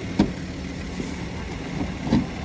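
A short, sharp plastic click about a quarter-second in, with a fainter one about a second in, as the plastic lower splash panel under the car is pushed into place, over a steady low background rumble.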